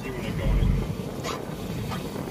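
Wind buffeting the microphone: an uneven low rumble that swells about half a second in, then eases.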